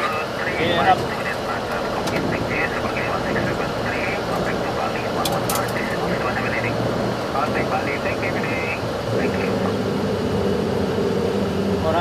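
Flight-deck noise of a Boeing 737-900ER in its takeoff climb: a steady rush of engine and airflow noise, with muffled, thin-sounding voices coming and going over it. About nine seconds in, a low steady hum joins.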